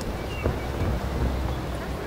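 Outdoor ambience dominated by a steady low rumble of wind on the microphone, with a few faint high chirps and a small click about half a second in.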